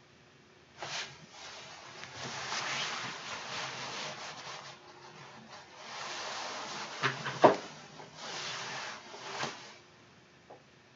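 A hand screwdriver driving Torx screws back into the plastic housing of a Dyson V11 stick vacuum: three stretches of rasping friction as the screw turns in the plastic. There is a click about a second in and a couple of sharp knocks a little past halfway, the loudest sounds.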